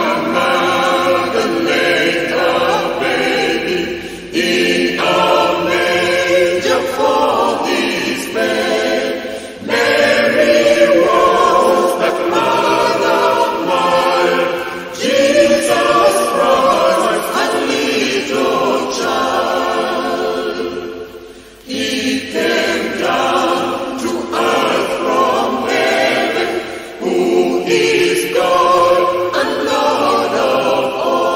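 Choir singing an English hymn in sung phrases, with a short break between phrases about every five to six seconds.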